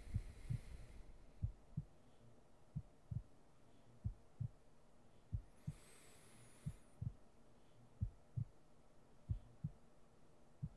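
Slow heartbeat, a low double thump (lub-dub) repeating about every 1.3 seconds.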